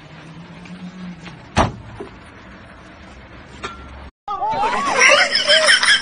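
Old classic Lada-type saloon's engine running with a low hum and a sharp bang about a second and a half in. After a brief break, loud excited voices shout and cry out.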